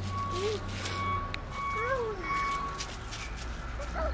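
A steady high electronic tone like a vehicle's reversing alarm, breaking off and resuming before it stops near the end of the third second, over a low engine rumble. A child makes a few short, soft rising-and-falling vocal sounds.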